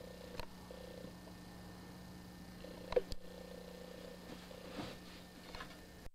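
Domestic cat purring, faint and on-and-off, with a sharp tap about three seconds in.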